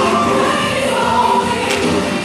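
Gospel music with a choir singing, with a sharp percussive hit shortly before the end.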